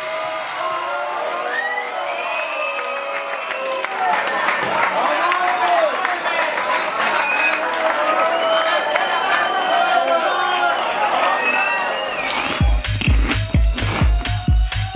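A club crowd cheering and shouting over a dance track whose bass has been cut out. About a second before the end, the kick drum and bass come back in with a steady beat.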